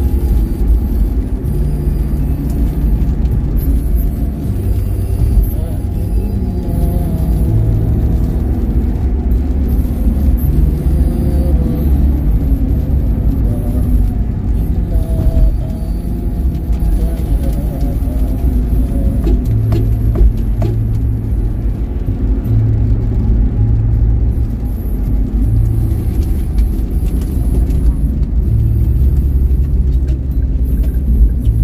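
Steady low road and tyre rumble inside a car's cabin at highway speed, with music playing over it, its low notes changing every second or two.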